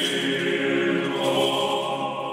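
Church choir singing Orthodox liturgical chant, several voices holding sustained chords.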